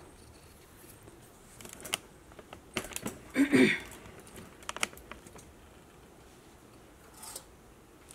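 A metal spoon clinking and scraping against a stainless steel saucepan of milk on a gas stove: a few scattered light clicks, with one louder knock about three and a half seconds in.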